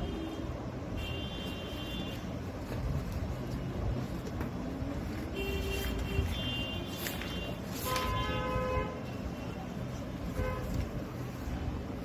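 Background road traffic: a steady low rumble with vehicle horns tooting several times.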